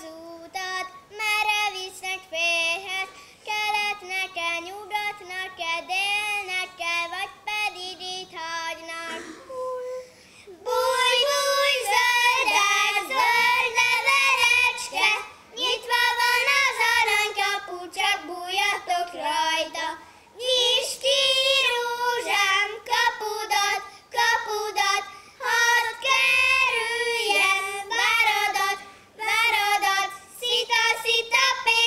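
Children singing a folk song without accompaniment: a girl sings alone at first, then after a short break about ten seconds in two boys join her and the singing grows louder.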